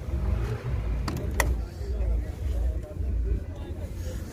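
Lada 2107 car door latch clicking open about a second in, over a low rumble on the microphone and voices in the background.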